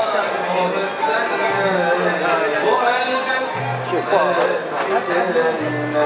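A man's voice singing an Arabic song, with low instrumental notes held underneath that change in steps.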